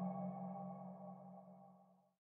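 Background music: a held, ringing drone of several steady tones, fading out to silence by about a second and a half in.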